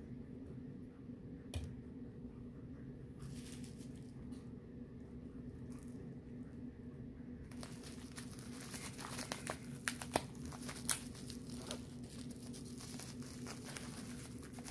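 Faint crinkling and rustling of packaging being handled, starting about halfway through and building to scattered sharp crackles, over a low steady room hum.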